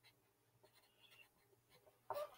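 Near silence, with faint scratches of a Sharpie marker writing on paper.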